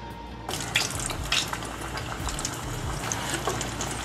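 Flour-dredged stuffed tofu deep-frying in hot oil: a steady sizzle with scattered crackles that starts suddenly about half a second in.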